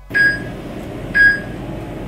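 Workout interval timer's countdown beeps: two short high beeps a second apart, counting down the last seconds of a rest period, over steady background noise.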